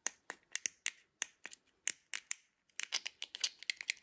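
Plastic fidget pad clicking under the thumbs as its buttons and switches are pressed: separate sharp clicks at first, then a faster run of clicks in the last second or so.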